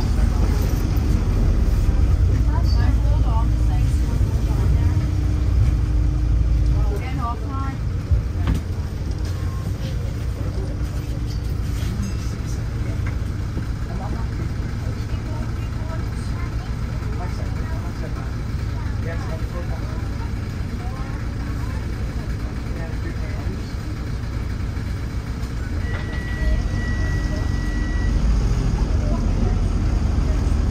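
Cabin sound inside a Wright Eclipse 2 single-deck bus: the low diesel engine and road rumble runs heavier for the first few seconds, eases off about seven seconds in, and builds again near the end, with passengers talking in the background. A steady electronic beep sounds for about two seconds near the end.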